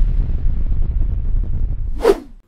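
Logo-intro sound effect: a deep rumbling boom that holds steady, with a short swish near the end.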